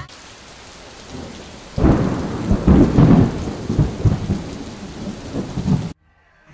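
Rain and thunder sound effect: a steady rain hiss, joined about two seconds in by a long rolling rumble of thunder that cuts off abruptly at the end.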